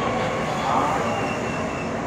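Seoul Subway Line 2 electric train running at speed, heard from inside the passenger car: steady wheel and rail running noise, with a faint high whine about a second in.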